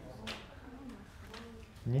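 Faint, muffled voices from the audience in a lecture room, low murmured answers to a question.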